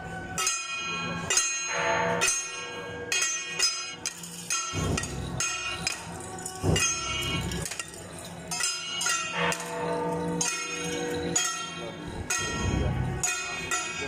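Ringing metal percussion struck over and over in an uneven rhythm, each stroke followed by a bell-like ring, with voices mixed in.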